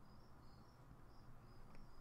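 Near silence: faint room tone with a faint high-pitched chirping that repeats a few times a second.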